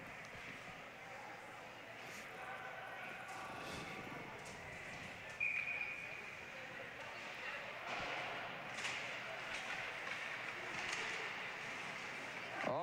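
Hockey rink ambience during a stoppage in play: distant players' voices and calls echoing in the arena, with scattered light clicks of sticks and skates on the ice. A short high tone sounds about five and a half seconds in and is the loudest moment.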